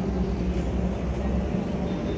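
A motor engine running nearby: a steady low hum over a deeper rumble, which eases off about three-quarters of the way through.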